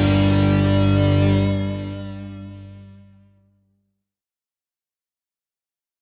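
A live tarling dangdut band's last chord, with electric guitar, held and then fading away over a couple of seconds as the song ends.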